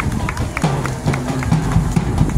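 High school marching band playing as it marches past: sharp drum strikes over low held brass notes that change pitch every half second or so.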